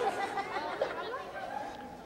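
Several people's voices chattering indistinctly, with overlapping talk and calls, getting a little quieter toward the end.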